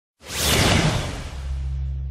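Logo-reveal whoosh sound effect: a rushing swish that swells quickly and fades, joined about halfway through by a low steady hum.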